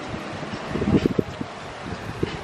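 Wind noise on the handheld camera's microphone, with a few faint low knocks about half a second to a second and a half in.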